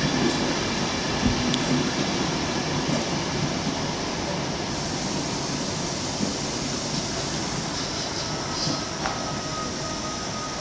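Greater Anglia Mark 3 coaches, led by driving van trailer 82112, rolling into the station, with steady wheel-on-rail rumble that eases slowly as the train slows. A faint thin high tone joins near the end.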